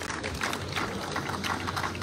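Audience applauding at moderate volume, a steady crackle of many hand claps.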